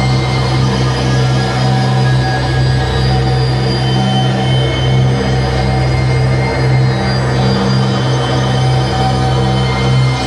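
Live harsh noise from a tabletop electronics setup: a loud, dense, unbroken wall of noise over a strong low hum, with several steady higher tones held through it.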